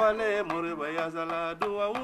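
A man singing a held, wavering melodic line with no clear words, over plucked notes on a ngoni, a West African lute.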